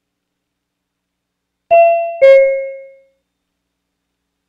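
Two-tone ding-dong chime: a higher note about 1.7 s in, then a lower note half a second later, each ringing out and fading within about a second.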